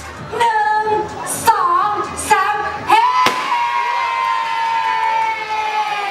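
Music with a female voice singing; about three seconds in she holds one long note that slowly sinks a little in pitch.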